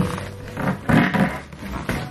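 A large cardboard gift box lid being lifted off and handled: scraping and rustling of cardboard, loudest about a second in, with sharp knocks at the start and near the end.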